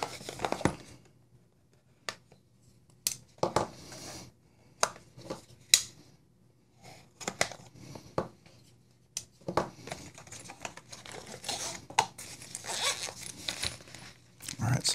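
A small cardboard knife box being opened and its packaging handled: scattered sharp taps and clicks of cardboard flaps, then a longer stretch of rustling and crinkling near the end.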